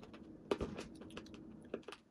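A few faint, irregular clicks, the loudest about half a second in and two more near the end, from a candy cane flavoured Icebreakers mint being eaten.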